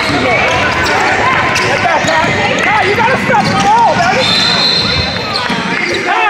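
A basketball bouncing on a hardwood gym floor among the shouts and chatter of players and spectators, all echoing in a large hall. About four seconds in, a referee's whistle sounds once for about a second, stopping play.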